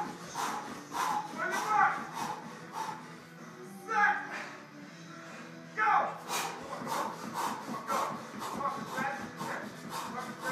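A man panting hard in quick breaths while jumping in place, his feet landing on the floor about twice a second, with a lull about three seconds in. Faint workout music plays in the background.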